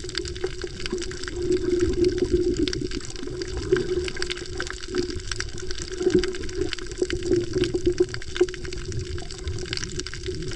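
Underwater sound picked up by a camera held beneath the surface on a coral reef: a continuous rushing water noise with a low hum and many scattered short clicks.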